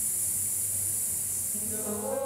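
A long, steady hissed exhale, a singer's 'sss' breathing exercise for breath control. Near the end a voice starts singing sustained notes.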